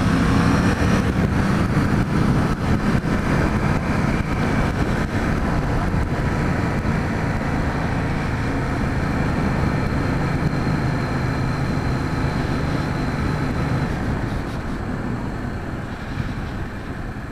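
Yamaha MT-07 parallel-twin engine running at a steady cruise, heard from the rider's position along with a steady rush of wind noise. The engine note eases off slightly near the end.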